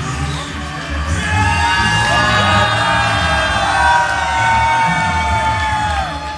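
Loud concert music playing in a hall, with a crowd cheering and whooping that swells about a second in.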